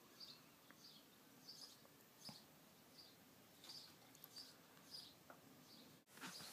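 Near silence, with a bird chirping faintly in short high chirps about twice a second.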